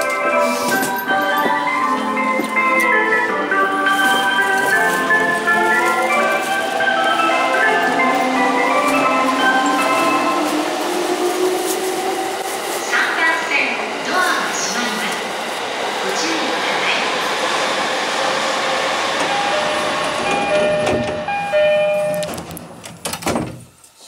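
Station departure melody playing over the platform speakers while the train's doors stand open, then a few chime tones near the end before the doors shut and the platform sound cuts off suddenly.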